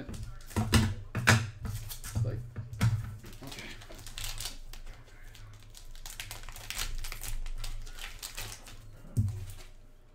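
Plastic wrapping crinkling and tearing as a sealed single-card pack is opened by hand, with sharp crackles loudest in the first three seconds and a single click about nine seconds in. A steady low hum runs underneath.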